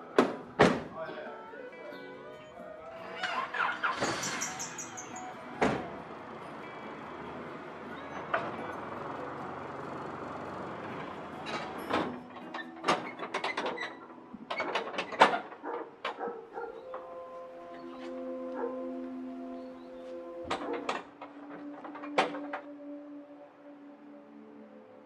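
Background music over car sounds: several sharp thuds, like car doors shutting, and a car engine running. Held musical notes in the second half.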